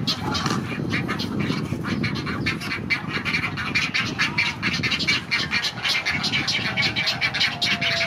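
Great egret chicks begging at the nest: a rapid, unbroken clatter of short calls, several a second.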